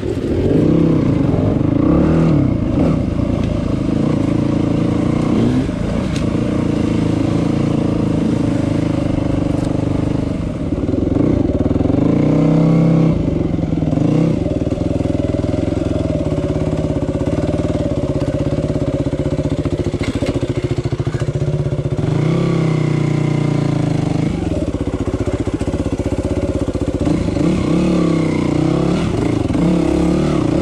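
Yamaha WR250 enduro dirt bike engine being ridden on rough trail, its pitch rising and falling over and over as the throttle is opened and closed.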